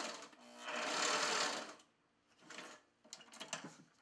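Sewing machine stitching through a double fold of webbing in a short run that stops just under two seconds in. A few light clicks follow.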